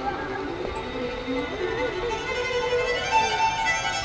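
Bluegrass fiddle played live, bowing a melody with a few notes that slide in pitch.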